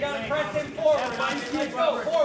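Men's voices talking or calling out, with no clear words.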